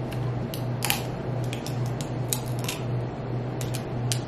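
King crab leg shells being cracked and snapped apart, a series of sharp cracks, the loudest about a second in, over a steady low hum.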